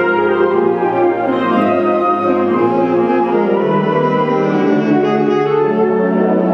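Alto saxophone soloist playing with a full concert band (flutes, clarinets, brass, mallet percussion), the band sustaining held chords under the saxophone line; the lower notes shift about halfway through.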